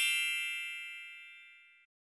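A single bright, bell-like ding sound effect with several high ringing tones, fading away over about a second and a half.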